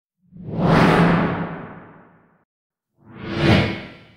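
Two cinematic whoosh sound effects for a logo reveal. The first swells quickly and fades away over about two seconds; the second is shorter, rising to a peak near the end and fading out just after.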